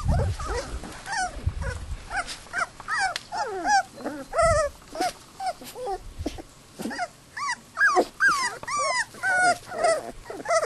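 Australian kelpie puppies whining and yipping over and over, short high calls that rise and fall, several puppies overlapping. A few low knocks come near the start and about halfway through.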